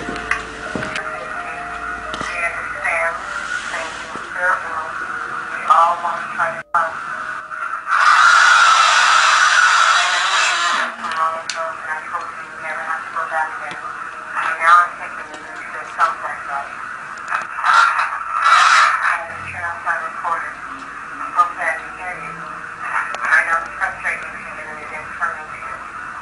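A voice recording played back through a small device speaker, the voice thin and tinny. A loud, harsh noisy burst lasts about three seconds about a third of the way in, with a shorter one later.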